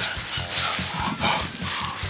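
Dry fallen leaves rustling in irregular bursts as hands dig and sweep through them on the ground.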